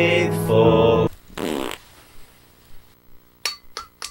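A voice singing a slow chant-like hymn line, held on sustained notes, stops about a second in. Just after it comes a short, low buzzing sound that wavers downward in pitch. Then it is quiet apart from a few light clicks near the end.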